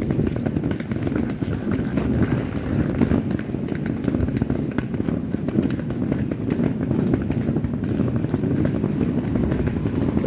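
Outdoor street ambience heard while walking: a steady low rumble of motor traffic and scooters, with many small clicks and scuffs throughout.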